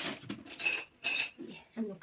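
A metal spoon clinking twice against a stainless steel plate, about half a second apart, each strike ringing briefly, as rice is spooned onto the plate.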